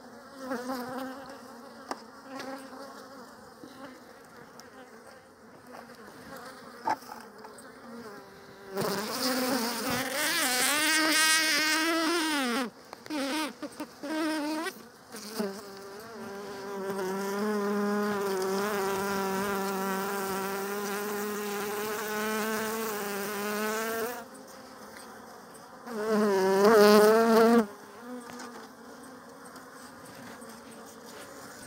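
Honeybees buzzing around an open hive, with bees flying close to the microphone in loud buzzes whose pitch wavers: one about a third of the way in, a long steady one through the middle, and a short one near the end.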